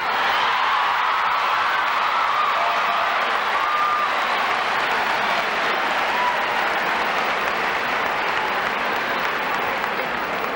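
Large audience applauding in a long, steady wave of clapping that eases slightly near the end, with a few brief voices calling out over it.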